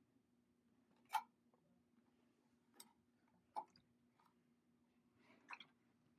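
Near silence: faint room tone with a steady low hum and a few faint clicks, the loudest about a second in.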